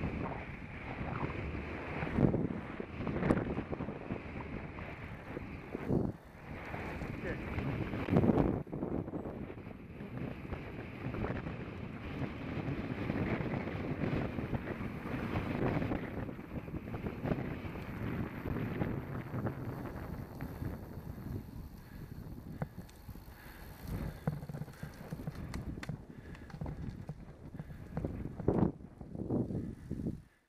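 Wind rushing over the microphone of a camera riding on a moving road bike, gusting unevenly, with louder swells about two, three and eight seconds in and again near the end.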